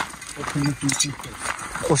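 A voice speaking softly, words not made out, over footsteps of people walking on a dirt track, with a few light clicks.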